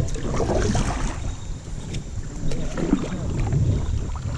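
Paddle strokes in creek water from a paddle board, with wind rumbling on the camera microphone.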